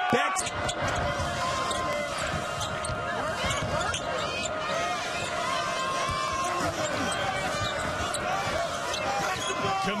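Game sound of a televised college basketball game: a basketball bouncing on the hardwood court with repeated short sharp strikes, over steady arena crowd noise.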